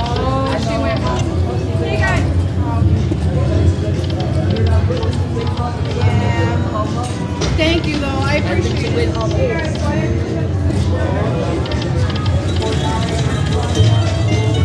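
Casino slot-machine sound: a Buffalo Gold machine's reel-spin music and jingles, with people talking nearby over a steady low hum.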